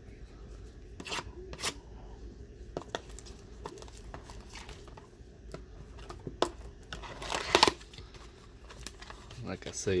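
Cardboard trading-card blaster box being handled and torn open by hand, with scattered taps and clicks. There is one louder, short rip about three-quarters of the way through.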